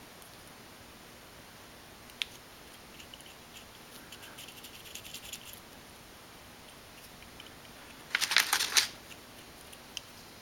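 Small plastic and metal parts of a 1997 Toyota 4Runner door courtesy light switch being handled and fitted back together: one sharp click about two seconds in, faint scraping and rustling, then a quick cluster of clicks and rattles just after eight seconds.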